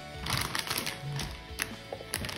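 Background music, with a short patch of dry crackling noise in the first second and a few sharp clicks later on.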